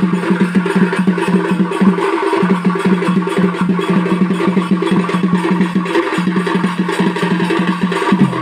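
Odia folk drumming on large shoulder-slung barrel drums (dhol) beaten with sticks: a fast, dense, driving beat. A continuous low drone runs under it and breaks off briefly about two seconds in and again near six seconds.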